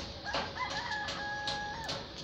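A rooster crowing: one call of about a second and a half that rises, holds a steady note and drops off at the end. A few sharp clicks sound along with it.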